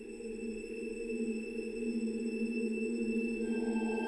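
Film-score music opening with sustained held tones, a low chord swelling gradually louder under thin high steady notes. A new note enters above the chord near the end.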